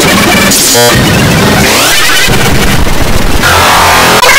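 Very loud, distorted jumble of music and sound effects, with a short stuttering repeat about a second in and rising pitch sweeps in the middle.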